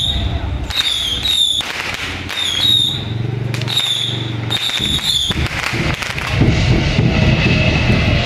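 A temple procession drum-and-cymbal troupe playing: a big drum and many hand cymbals clashing together about once a second, each crash ringing out. About six seconds in the playing gets louder and denser, with a steady ringing.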